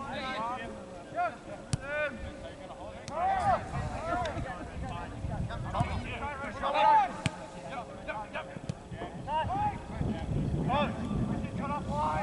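Players calling and shouting across an outdoor soccer field, many short rising-and-falling shouts heard at a distance, with a couple of sharp knocks and some wind rumble.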